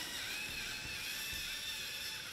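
Small electric motors of a LEGO Mindstorms line-following robot whining, the pitch wavering up and down as it steers along the line, over a steady hiss.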